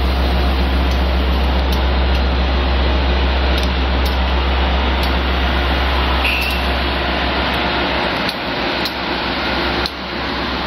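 Amtrak AEM-7 electric locomotive passing close by, with a steady low hum from its motors and blowers over the rush of wheels on rail. The hum fades about seven seconds in as the locomotive moves on and the Amfleet coaches roll past. A short high squeal, likely from the wheels, comes about six seconds in.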